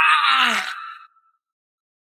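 A man groaning in pain, the cry falling in pitch and dying away about a second in: the cry of a man who has just had a tooth pulled out with pliers.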